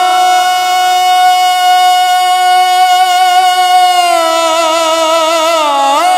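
A man singing a naat, holding one long, steady note for about four seconds. Near the end the note wavers and sinks a little. Only his voice is heard.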